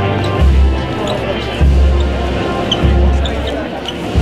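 Spanish wind band playing a slow processional march: sustained brass and woodwind chords over a deep bass drum struck about once every second and a bit.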